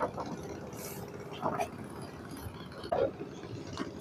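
A low, steady background hum with two short, faint bursts of a person's voice, about one and a half and three seconds in.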